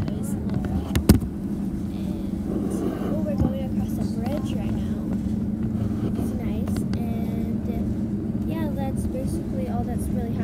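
Steady drone of an RV's engine and road noise heard inside the cabin while driving, with two sharp knocks near the start, about a second apart.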